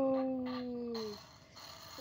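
A woman's drawn-out exclamation: one long held note that sinks slowly in pitch and stops about a second in.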